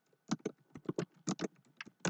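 Typing on a computer keyboard: about a dozen irregular key clicks in quick runs with short gaps.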